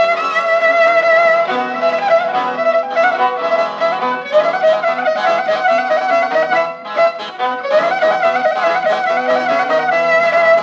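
Traditional Cretan syrtos dance tune from a 1940s–50s recording: a bowed fiddle carries an ornamented melody over a steady rhythmic accompaniment, with the thin, narrow sound of an old recording.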